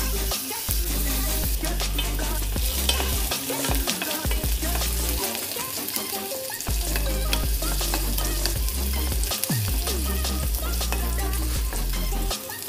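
Chopped garlic sizzling in hot oil in a stainless steel pan, stirred and scraped with a wooden spatula that clicks against the metal. A backing track's bass plays in steady blocks underneath.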